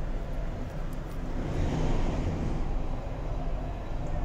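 Steady low rumbling background noise with no speech, swelling briefly about two seconds in.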